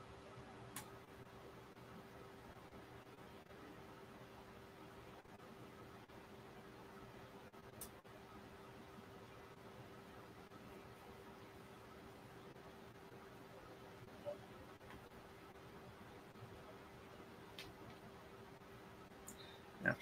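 Near silence: faint room tone with a steady low hum and a few soft, brief clicks.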